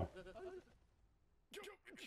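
Faint anime dialogue from the episode playing underneath: a short voiced line, about a second of near silence, then a young woman's voice starting a new line near the end.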